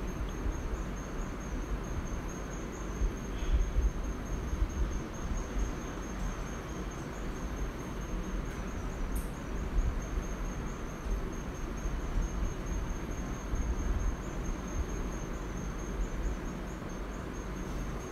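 Staedtler 8B graphite pencil drawing on paper: soft, irregular scratching of short strokes. Under it run a steady high-pitched whine and a low background rumble.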